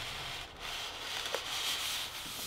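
A white foam inner box sliding out of a printed cardboard sleeve: a steady scraping rub of the two surfaces, with a small click about a second and a half in.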